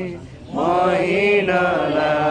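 People singing a Nepali Christian worship song. After a brief dip, a long note is held from about half a second in.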